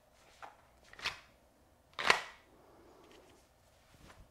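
A pistol handled in an inside-the-waistband holster worn on an elastic belly band: three short sharp clicks, the loudest about two seconds in, followed by faint rustling of clothing and fabric.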